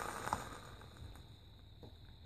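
Quiet room tone: a low steady hum, with a faint click about a third of a second in.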